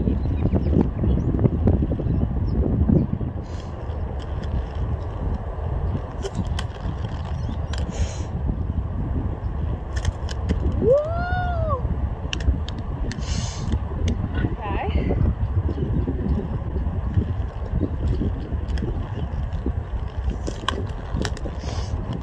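Quad roller skate wheels rolling over a hard outdoor court: a steady low rumble, louder in the first few seconds, with scattered light clicks. About eleven seconds in, the skater gives one drawn-out vocal sound that rises and then falls in pitch.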